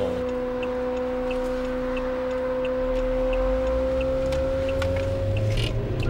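Cabin sound of a SAAB 9-5 Aero's turbocharged four-cylinder as the car pulls away from a standstill: low engine and road rumble building from about three seconds in. Throughout, a steady humming tone and faint regular ticking about three times a second, which stop just before the end.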